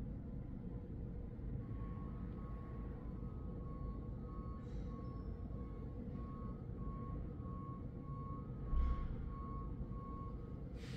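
Faint repeating electronic beeping in two close pitches, about three beeps every two seconds, starting about a second and a half in, over a steady low hum. A short rustle of paper comes twice, the louder one near the end.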